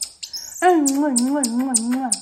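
Marmoset giving a run of rapid, very high-pitched chirps with a short falling whistle early on, the chirps continuing over a drawn-out, wavering human cooing voice that starts about half a second in.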